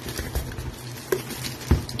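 Hands handling a small cardboard trading-card box: rustling and scraping, with a few light taps and clicks.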